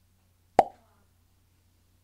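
A single short, sharp pop about half a second in, with a brief ringing tail, over a faint low hum.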